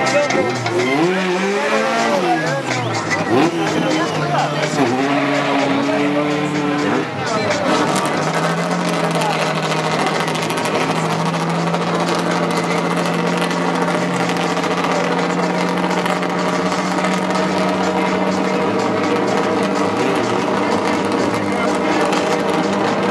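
A drag car's engine idling steadily at the start line: one unchanging note from about eight seconds in, over crowd noise. The first several seconds are busier, with pitches rising and falling.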